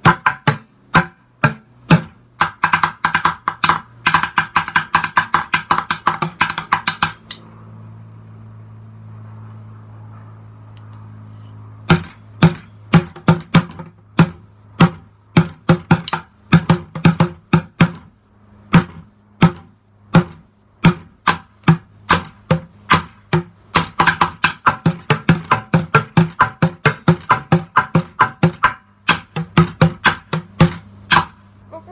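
Wooden drumsticks beating upturned plastic buckets in a bucket-drumming groove, with fast runs of rapid strikes. The strikes stop for about five seconds a quarter of the way in, then the beat picks up again.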